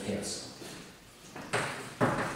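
Chalk writing on a blackboard: short scratching strokes near the start, a brief pause, then more chalk strokes from about one and a half seconds in.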